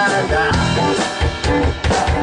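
Rock band playing, with drum kit and guitars.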